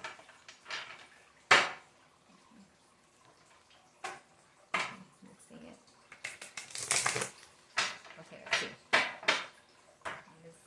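A deck of oracle cards being shuffled and handled: a sharp slap of cards about one and a half seconds in, a couple of lighter flicks, then a run of quick card snaps and riffles in the second half.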